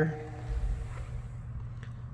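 Pause with a steady low hum in the background and a brief low rumble about half a second in.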